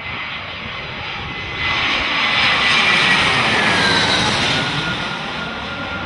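Jet aircraft engine noise used as a sound-effect intro to a dance track. It swells about two seconds in, with a thin whine that slowly falls in pitch.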